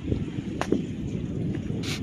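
Wind buffeting the phone's microphone, a steady low rumble, with a single sharp click partway through.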